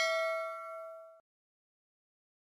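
Bell-chime sound effect for a notification bell icon being clicked: a bright ding of several pitches that rings on, fades, and cuts off suddenly a little over a second in.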